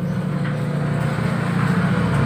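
A motor vehicle's engine humming steadily low, gradually growing louder.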